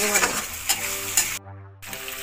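Tomato and ginger-garlic masala sizzling in hot oil in a kadai while a metal spatula stirs and scrapes it, with a few sharp scrapes. This is the sautéing stage of the curry base. The sound drops out briefly about a second and a half in.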